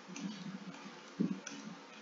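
Soft irregular knocks and light clicks of a stylus writing on a tablet surface, with one louder knock just past a second in.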